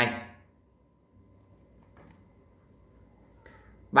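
Faint scratching of a pen writing a fraction on notebook paper, with a faint tick about two seconds in.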